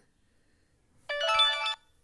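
A short electronic melody of several quick stepped notes, about a second in and lasting under a second, typical of a phone notification or ringtone.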